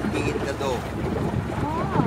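Small river boat under way: a steady low engine rumble with wind buffeting the microphone, and voices talking over it.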